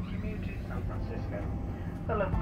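Steady low rumble inside a Boeing 747-400's cabin as the airliner taxis, with faint voices over it.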